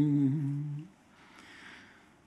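A man's voice reciting Arabic scripture in a slow melodic chant, breaking off a little before halfway into a short quiet pause.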